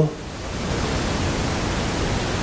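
Steady, even hiss of background noise, with no voice.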